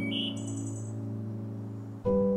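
Ambient background music with a held chord slowly fading out, and a short bird chirp followed by a brief high trill within the first second.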